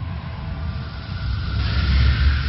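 Cinematic sound effect: a deep rumble with a rushing whoosh that swells about a second and a half in and is loudest at the end.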